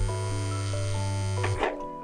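A mobile phone buzzing on vibrate for about a second and a half, then a short rustle of bedding, over soft background music.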